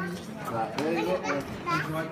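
Voices talking, a child's voice among them, with no clear words.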